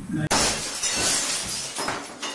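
Editing sound effect in a crash-like, breaking-glass style: a sudden loud burst of noise about a third of a second in that fades away over about a second and a half, with a smaller swell near the end, marking the cut to the show's outro graphic.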